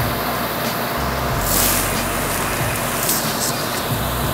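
Steady grocery store background noise: a low hum under a general din, with a brief burst of hiss about one and a half seconds in.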